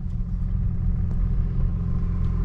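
Cabin sound of a stage 2 tuned BMW 535d, a twin-turbo straight-six diesel, cruising: a steady low rumble of engine and road, with no revving.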